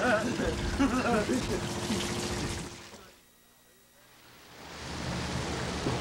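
Talk over a steady engine hum aboard a fishing schooner, which fades out to near silence about halfway through. A steady rush of wind and sea noise then fades back in.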